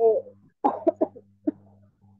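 A person coughing, a few short coughs in quick succession, over a steady low hum.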